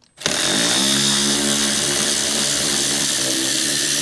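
A small cordless power tool with a 10 mm socket running steadily as it spins out the bolt holding the truck's A-pillar trim. It starts a moment in, and its pitch settles slightly lower under load after the first second.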